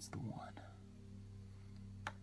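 A brief faint whispered voice just at the start, then quiet room tone with a steady low hum.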